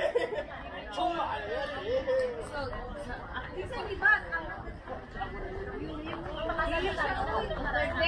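Overlapping chatter of several people's voices, talking and calling out across the field. One sharp knock stands out about four seconds in.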